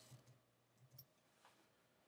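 Near silence with a couple of faint computer keyboard clicks around one second in, the Control-W shortcut being pressed.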